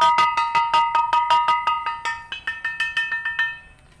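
A large old Chinese porcelain jar tapped rapidly by hand, about seven taps a second, each tap ringing with a clear bell-like tone. A little past halfway the ring changes pitch as another spot is struck, and the tapping stops shortly before the end. A clear ring like this is the usual sign that the porcelain is sound and uncracked.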